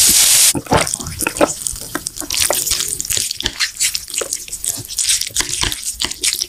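Carbonated soda poured from a can over ice into a glass: a loud hiss of pouring that stops about half a second in, then a dense, irregular crackle of fizzing bubbles in the glass.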